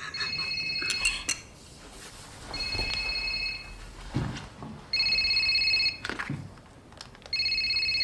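Cordless home telephone ringing with an electronic ring: four rings of about a second each, about two seconds apart.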